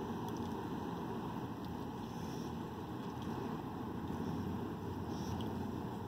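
Steady low rumble inside a parked truck's cab, with no sudden sounds.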